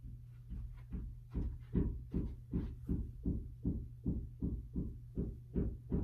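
A regular run of soft thumps, about two and a half a second, starting about a second in, over a steady low hum.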